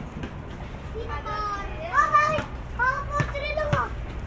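Children shouting and calling out to each other while playing in the street, their high voices starting about a second in and loudest around the middle. A steady low rumble runs underneath.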